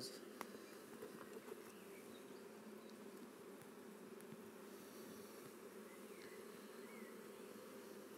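Faint, steady hum of many honey bees buzzing around an opened hive, with one light click about half a second in.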